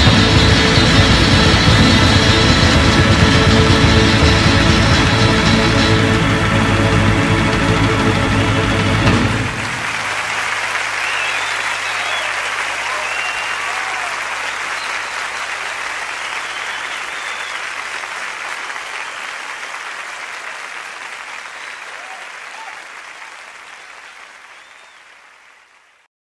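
Recorded pop-rock music playing loudly, then cutting off about nine seconds in; a crowd applauds and cheers, fading away gradually until nearly silent at the end.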